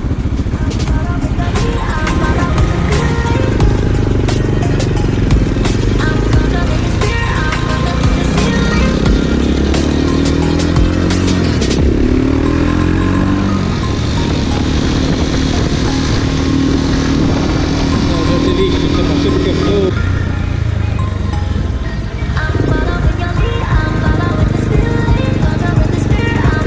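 Motorcycle engine under way in traffic, its pitch rising and falling as it accelerates and changes gear, with background music mixed over it.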